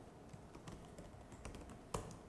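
Faint computer keyboard typing: a few light scattered keystrokes, then a sharper keystroke near the end.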